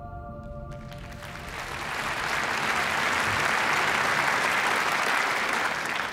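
Audience applauding, swelling from about a second in and holding steady before easing off near the end. The last notes of an intro music sting fade out at the start.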